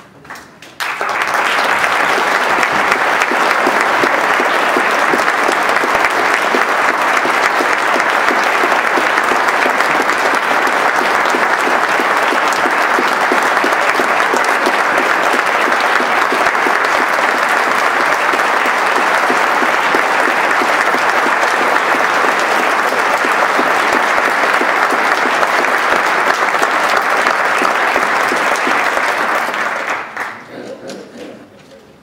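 Audience applauding steadily, starting suddenly about a second in and dying away at the end.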